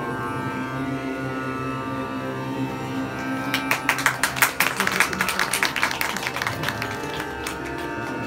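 Indian classical drone of tanpuras with a harmonium holding steady notes. About three and a half seconds in, a dense run of sharp clicking strikes joins it, loudest about a second later, and thins out near the end.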